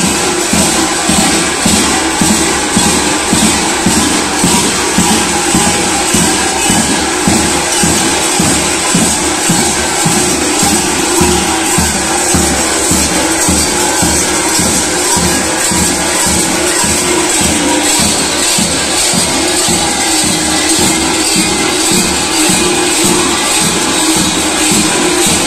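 Large tapan drums beating a steady rhythm, with kukeri dancers' belt bells clanging and jangling continuously over it.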